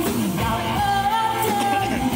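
Live rock band playing with a male singer holding one long high note from about half a second in, over electric guitar and bass backing.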